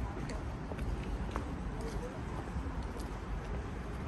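Footsteps of a person walking, faint ticks about twice a second, over a steady low rumble of city and construction-site background.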